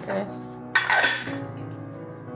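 China cups and a steel kettle clinking against each other and the counter as tea things are handled: a few sharp clinks, the loudest about a second in, over background music.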